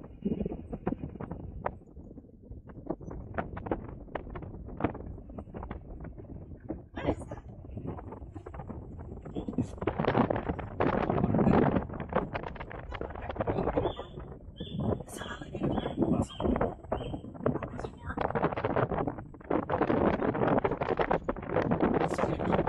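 Indistinct voices of people talking, with wind buffeting the microphone and a short run of high beeps a little past the middle.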